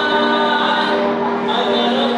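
A man singing into a handheld microphone, holding long, steady notes.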